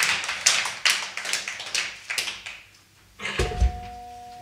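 A small audience claps irregularly, and the applause dies away about two and a half seconds in. A low thump follows, then acoustic guitar strings ring on steadily as the guitar is handled.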